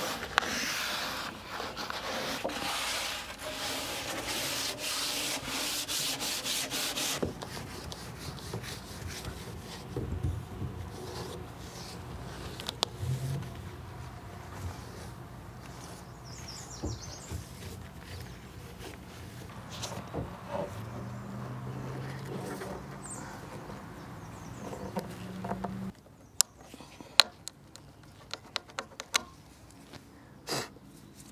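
A green scrub pad scrubbing a varnished wooden dresser by hand: a rasping rub of quick back-and-forth strokes, loudest in the first several seconds, then lighter. Near the end the scrubbing stops and a few sharp clicks are heard.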